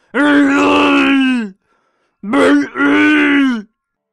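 Wookiee vocalising from the film's soundtrack. One long call comes first, then after a pause two more close together, each dropping in pitch at its end.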